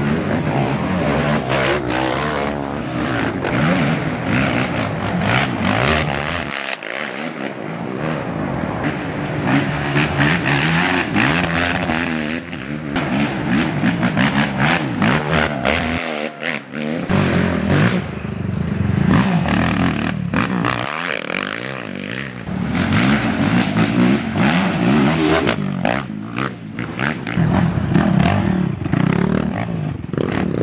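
Race ATV engines revving hard and easing off in rising and falling sweeps as quads pass one after another. The sound shifts abruptly a few times between shots.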